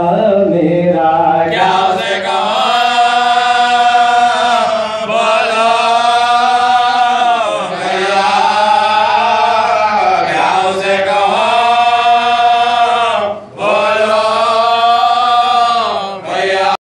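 Group of men chanting a noha, an Urdu lament, together into a microphone, in long drawn-out sung phrases of a few seconds each with short breaks for breath between them.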